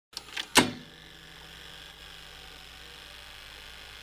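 Three quick mechanical clicks in the first second, the third the loudest, followed by a steady faint electrical hum with hiss.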